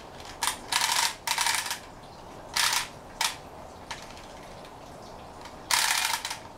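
Small plastic wind-up toy's clockwork mechanism, whirring in short bursts: two close together about a second in, two more around the middle, and one near the end.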